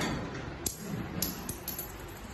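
A short rush of noise at the very start, then about five light, sharp clicks over the next second or so: coins being fed into the coin slot of a coin-operated height, weight and blood-pressure kiosk.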